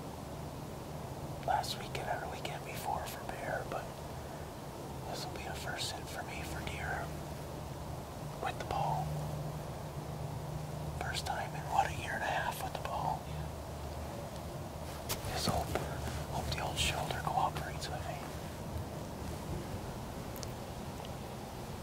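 Hushed whispering in several short bouts, with pauses between them, over a steady low hum.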